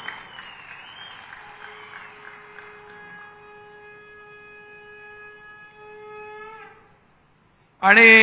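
A single long, steady horn-like blown note, held for about five seconds and bending up slightly just before it stops.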